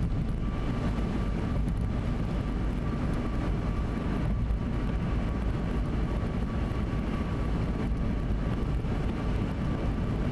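A car driving at highway speed on wet pavement, heard from inside the cabin: a steady rush of tyre and road noise over the engine drone, with a faint steady high tone running through it.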